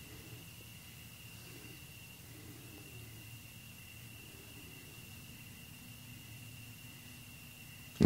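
Faint, steady room tone: a low hum and even hiss with a thin, steady high whine.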